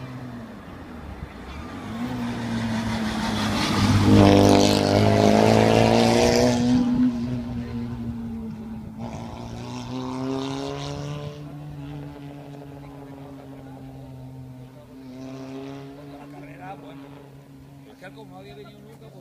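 Rally car engine approaching at speed, loudest as it passes about four to seven seconds in, then revving up again as it pulls away and fades, with another rise in revs near the end.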